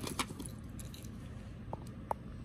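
A hand rummaging among small items in a fabric cosmetic pouch: quiet shuffling with a couple of light clicks at the start and one more near the end.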